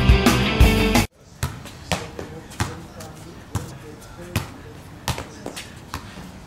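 Music that cuts off suddenly about a second in, then a ball bouncing and being hit in play: a string of sharp knocks, roughly one or two a second.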